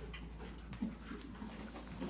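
Faint animal panting, with a soft low sound a little under a second in.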